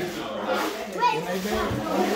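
Indistinct talking of several people in a room, no clear words.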